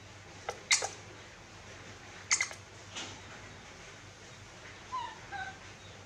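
Newborn macaque giving short, high whimpering squeaks, a couple of them about five seconds in. Two loud sharp clicks come earlier, about half a second and two and a half seconds in.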